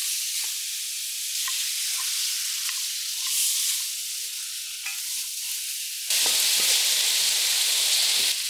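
Pork spare ribs frying in a little oil in a hot pan: a steady sizzle with scattered small pops as the seasoning caramelizes onto the meat. About six seconds in the sizzle gets suddenly louder.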